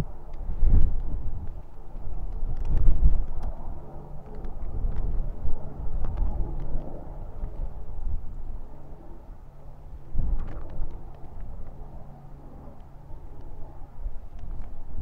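Wind buffeting the microphone in gusts on open moorland, a rumble that swells and drops, with a faint steady low hum underneath.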